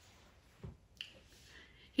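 Quiet room pause broken by two small faint sounds: a soft low thud just over half a second in, then a sharp little click about a second in.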